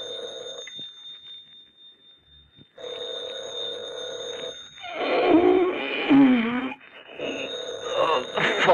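Telephone bell ringing as an old-time radio sound effect: one ring ends just under a second in, the next starts about three seconds in and lasts about four seconds, and another begins near the end. Over the second ring a man groans drowsily.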